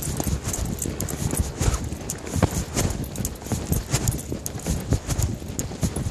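Handling noise: a dense stream of irregular knocks, clicks and rubbing as the recording device is moved about.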